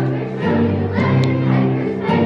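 Children's choir singing a Christmas song.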